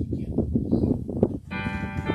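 A bell-like sustained chord on an electronic keyboard starts sharply about three-quarters of the way in, its many tones holding steady. Before it there is only a low rumbling noise, like wind on the microphone.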